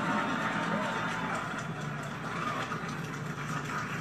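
Faint, indistinct voices from a television show playing in the room, over a steady low hum.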